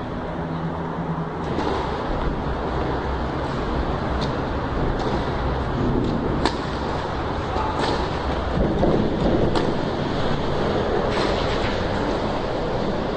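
Tennis racket strokes on the ball as sharp pops: a serve about six and a half seconds in, then further shots in a rally. A steady low rumbling noise runs underneath.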